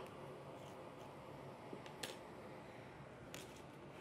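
Very faint room tone with a few soft clicks, about two seconds in and again near the end, from a metal spoon scooping the seeds out of a cucumber half over a glass bowl.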